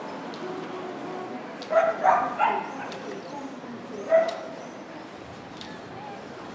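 A dog yipping: a quick run of short yips about two seconds in and one more about four seconds in, over faint street noise.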